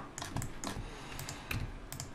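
Computer keyboard keys being pressed, about six separate taps.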